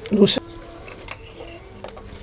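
Two faint clicks from a ratchet and spark plug socket on an extension as a spark plug is worked loose, over quiet background music; a brief vocal sound comes at the very start.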